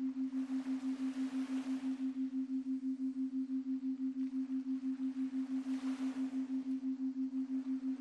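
A steady low pure tone pulsing evenly about five times a second, a meditation tone like those used for headphone listening, under a faint hiss that swells twice.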